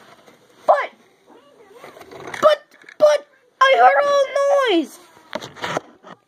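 A child's voice making wordless vocal noises: a short cry about a second in, a couple of brief calls, then a long held call from about three and a half seconds in that slides down in pitch at its end.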